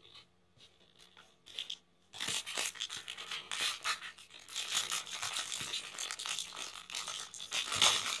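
A few faint taps, then from about two seconds in, the foil wrapper of a Panini Prizm trading-card pack being torn open and crinkling continuously.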